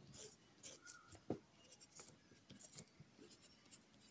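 Pen writing on paper: faint, irregular short scratches and taps of the pen tip, with one sharper tap a little over a second in.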